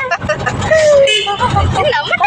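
High-pitched, sing-song voices and laughter of people playing with a baby, over the low running rumble of an auto-rickshaw.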